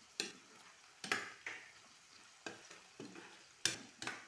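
A cooking utensil stirring and scraping food in a pan, in irregular strokes roughly half a second to a second apart, over a faint sizzle of frying.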